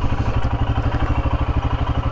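Royal Enfield Himalayan's single-cylinder engine running at low revs, an even, quick beat of about a dozen pulses a second.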